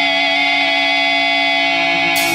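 Distorted electric guitars in a death-thrash metal song hold one long, ringing chord, with no drums under it.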